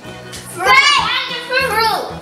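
Young girls' high-pitched voices, excited and laughing, starting about half a second in, over background music.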